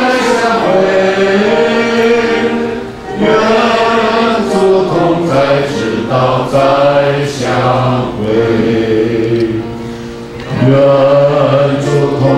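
A choir of voices singing a slow hymn together, in long held phrases with brief pauses between them.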